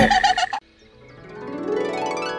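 Cartoon soundtrack: a run of quick, repeated pitched notes cuts off suddenly about half a second in. After a moment of near silence, a rising musical swell fades in.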